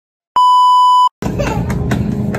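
A loud, steady electronic beep, a single pure tone lasting just under a second. It is followed by the steady hum and noise of a supermarket aisle with a few light taps.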